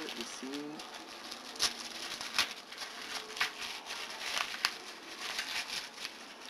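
White paper wrapping crinkling and rustling as it is pulled open by hand, with several sharper crackles along the way.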